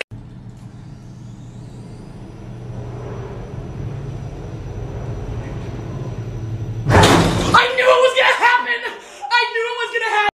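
A low rumbling drone swells steadily louder for about seven seconds, then breaks off in a sudden loud hit, followed by a woman's shouting voice.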